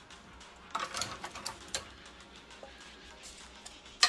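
A few light metallic clicks and clinks about a second in, from metal tongs and a pot being handled at an open oven rack, over faint background music.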